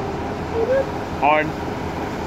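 Steady running noise of a moving train heard through an open carriage window, with a brief voice calling out about a second in.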